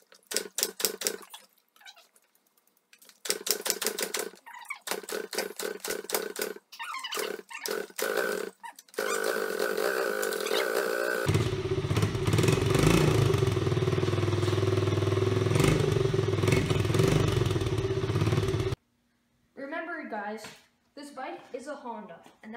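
Honda 50 pit bike's small four-stroke single being kicked over again and again, each kick a short mechanical rattle, until it catches about nine seconds in and runs, getting louder a couple of seconds later, then cuts off abruptly. It takes many kicks to start, which the owner can't explain.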